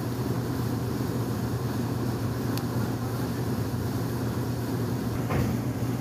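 Steady low mechanical drone of running machinery, with a faint click about two and a half seconds in.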